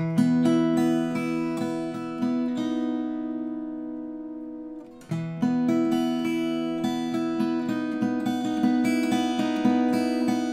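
Martin 00-28VS 12-fret grand concert acoustic guitar, with Indian rosewood back and sides and a Sitka spruce top, played fingerstyle: picked notes over a ringing bass. The first phrase rings out and fades. A second phrase starts about halfway through, with quicker picked notes toward the end.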